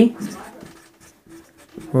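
Felt-tip marker writing on a whiteboard, faint short strokes between spoken words.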